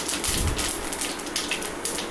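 Fennel and mustard seeds frying in hot oil in a pan: a steady, fine crackling sizzle.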